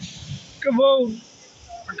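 A man's voice saying one drawn-out, wavering word, over faint outdoor background hiss.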